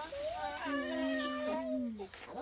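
A baby crying in long wails, one drawn-out cry sliding down in pitch near the end.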